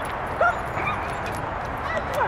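Dog barking: about three short, high-pitched yips, the loudest about half a second in and another near the end.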